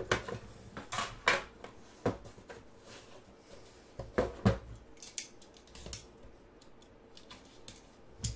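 Hands handling a metal trading-card tin and the small box inside it: a run of sharp clicks and knocks, loudest about a second in and again about four seconds in, with lighter taps between.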